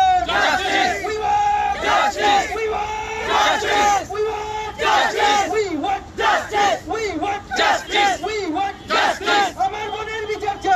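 Protest crowd chanting slogans in unison, led by a man shouting into a handheld microphone. It comes as loud, short shouted phrases that repeat about twice a second in the second half.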